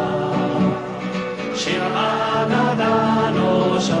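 Two men singing a Hebrew song together, accompanied by acoustic guitars.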